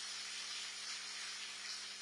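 Audience applauding, a steady clatter of many hands that fades slightly near the end.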